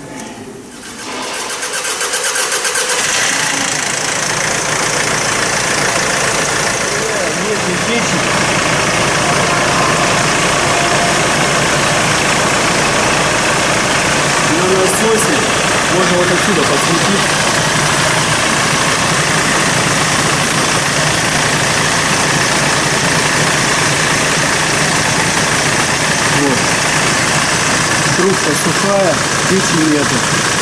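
Hyundai Starex turbodiesel engine started about a second in, quickly catching and then idling steadily: its first run after the high-pressure fuel pump was replaced.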